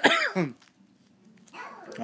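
Coughing: a few short voiced coughs in the first half-second, a pause, then another cough building up near the end.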